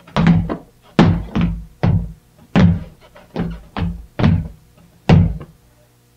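Stomping and shuffling steps of a clumsy soft-shoe dance on a floor: about a dozen heavy thuds at an uneven pace of roughly two a second.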